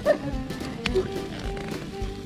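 Background music with held notes, with a few sharp clicks and a brief voice sound right at the start.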